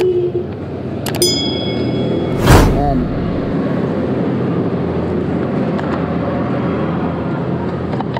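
Subscribe-button animation sound effects: a mouse click with a short high ding about a second in, then a loud burst of noise about a second later. Steady background noise follows.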